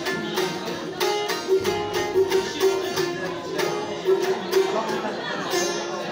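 Kopuz, the Turkish long-necked folk lute, played solo: quick, evenly repeated plucked strokes over a steady drone note. It is capoed at the fourth fret to sound in F.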